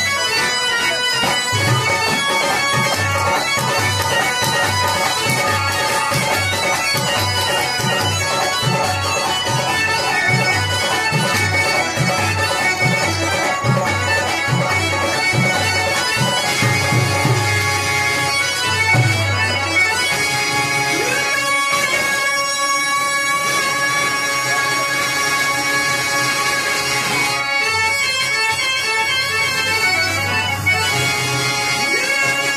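Harmonium playing held, droning melody lines, with a steady hand-drum beat under it that drops out for several seconds past the middle. This is the instrumental accompaniment of a Telugu padya natakam between verses.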